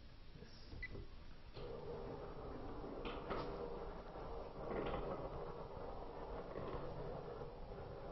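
Motorized projection screen rolling up into its housing: a steady mechanical hum that starts about a second and a half in and keeps going, with a few faint clicks.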